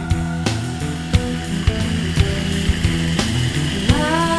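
Background music with a steady drum beat and held notes.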